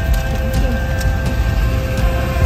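Background music at a steady level.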